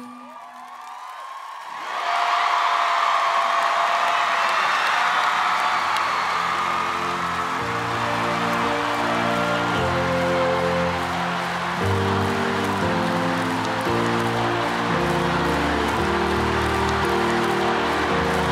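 A large studio audience bursts into applause and cheering about two seconds in, after the music fades. Steady, sustained low chords of background music come in under the applause around seven seconds in.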